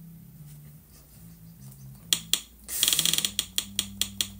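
Faint low hum. About two seconds in come a few sharp clicks, then a quick rattling run of clicks like a ratchet, then slower, separate clicks.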